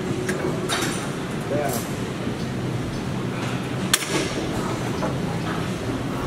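Steady gym room noise with faint distant voices, and a few sharp metallic clicks and clinks from the Hammer Strength row machine as it is worked, the sharpest about four seconds in.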